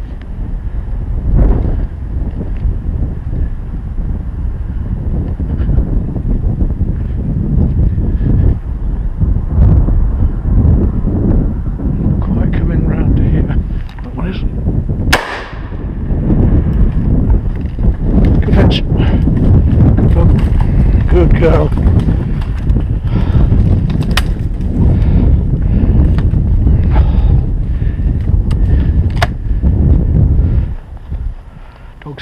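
Heavy wind buffeting on the microphone, gusting throughout, with a single sharp shotgun shot about halfway through and a few fainter sharp cracks near the end.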